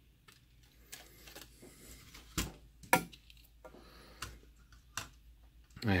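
Router's circuit board and plastic case being handled: scattered, irregular clicks and knocks, the loudest about three seconds in.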